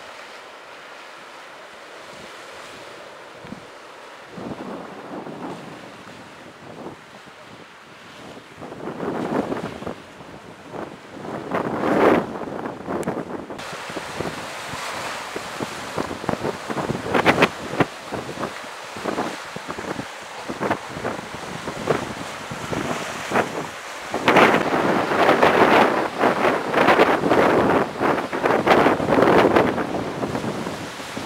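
Sea surf washing in on a rocky shore, with wind buffeting the microphone. The gusts are light at first and grow louder and more frequent from about a third of the way in.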